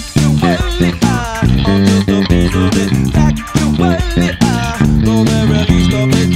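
Electric bass guitar played fingerstyle in a busy funk-rock line, heard together with a full-band recording of the song with drums and guitar.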